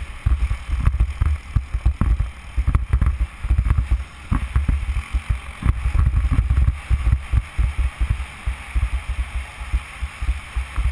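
Wind buffeting the microphone of a helmet-mounted camera in uneven, rapid rumbling gusts, over a steady hiss of a snowboard sliding on snow while it is towed.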